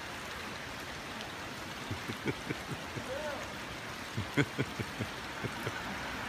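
A steady hiss of running water, like a mountain stream, with a string of short, muffled chuckles starting about two seconds in that break into open laughter at the very end.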